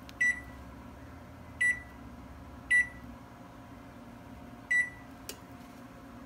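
KitchenAid Superba oven's touch control panel beeping as its keypads are pressed to set the timer: four short single-pitch beeps, irregularly spaced, with a faint click after the last.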